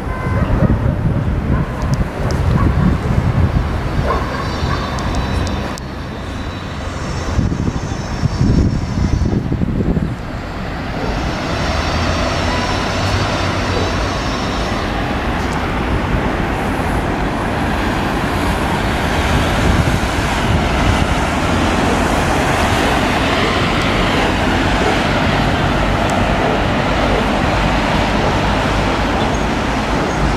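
Wind buffeting the microphone in gusts for about the first ten seconds. After that, a steady hiss of city traffic noise.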